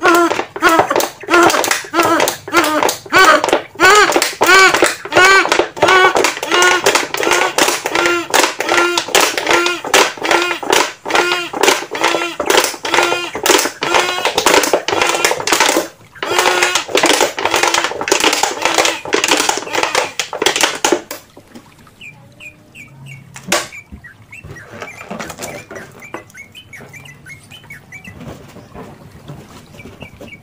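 A homemade plastic-bottle trumpet with a balloon membrane, which doubles as a balloon pump, honking as it is pumped. It gives rapid repeated toots, about two a second, each rising and falling in pitch, while the balloon on its straw inflates. The honking stops about 21 seconds in and gives way to faint handling clicks.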